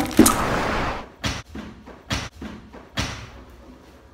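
Handling noise from a phone camera being moved: a loud rubbing rustle, then three sharp knocks about a second apart with fainter taps between, growing quieter.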